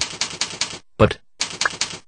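Typing on a computer keyboard: quick runs of sharp keystrokes, several a second, with a short break about a second in.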